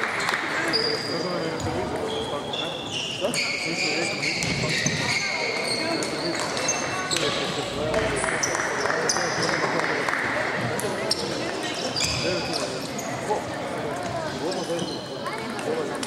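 Table tennis rally: the celluloid ball clicking off bats and table in quick, irregular strikes, with short high squeaks mixed in, over a murmur of voices in the hall.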